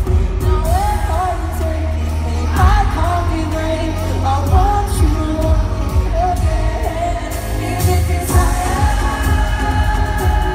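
Live synth-pop band performance in an arena: a male lead vocal singing over a heavy synth bass and drums.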